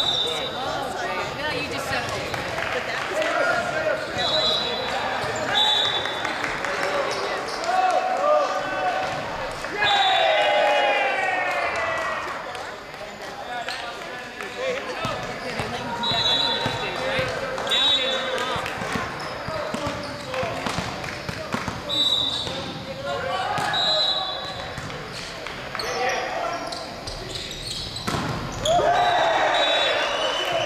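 Volleyball match in a large gym: players' voices calling and shouting, and sharp ball hits and bounces on the hardwood court, with repeated short high-pitched tones throughout.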